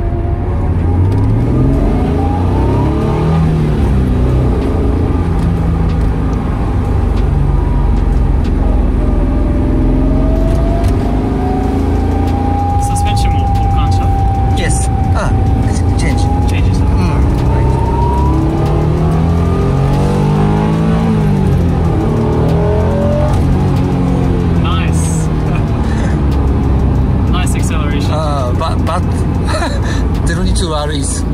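Honda NSX NA1's V6, with an aftermarket intake and muffler, heard from inside the cabin while being driven: the engine note rises with the revs near the start and again about twenty seconds in, with steadier running between.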